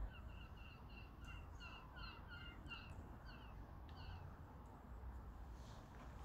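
A bird calling faintly in a rapid series of about ten short notes over roughly four seconds, each note dropping slightly in pitch.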